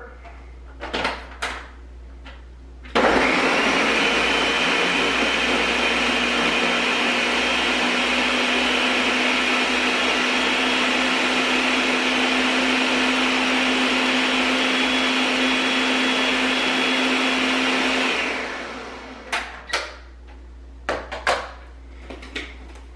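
Countertop blender blending bananas and frozen blueberries with cucumber juice: it starts abruptly about three seconds in, runs at a steady loud speed with a constant motor hum for about fifteen seconds, then spins down. A few knocks from handling the jar come before it starts and after it stops.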